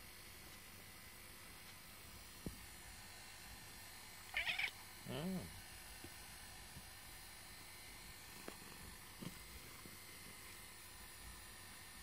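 Domestic cat giving a brief two-part meow while being stroked: a short high cry about four seconds in, followed at once by a lower, falling meow. The rest is faint room tone with a few soft taps.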